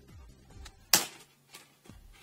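A single sharp plastic snap about a second in as the laptop's plastic screen bezel pops free of its clips, over quiet background music.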